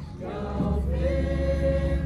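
A congregation of mixed voices singing a German hymn together in long, held notes. There is a brief breath between lines at the start, and a steady low rumble runs underneath.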